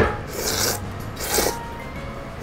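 A person slurping hand-made ramen noodles: two noisy slurps about a second apart, after a brief knock at the start.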